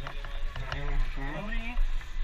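Men's voices talking, with a steady low rumble underneath.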